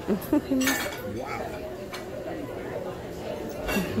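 Restaurant dining-room background of diners' chatter, with sharp clinks of dishes and cutlery, one about three-quarters of a second in and another near the end.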